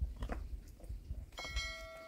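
Fired clay bricks knocked against each other as they are stacked by hand: a few soft knocks, then a clear ringing clink about one and a half seconds in that fades out over about a second.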